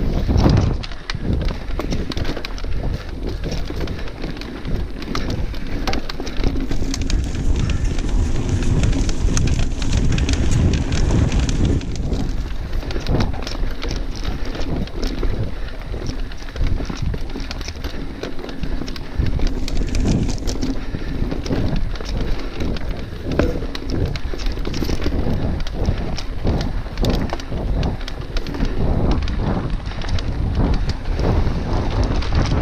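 Mountain bike riding along a rough dirt singletrack: a steady run of tyre noise on the ground with many small rattles and knocks from the bike over bumps and rocks.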